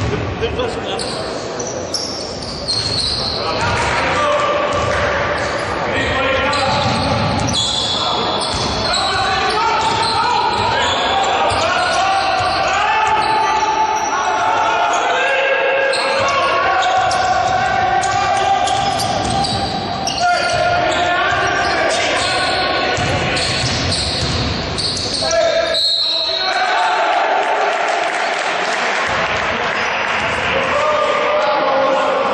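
Basketball bouncing on a hardwood court during a game, with players' and spectators' voices ringing through a large gym.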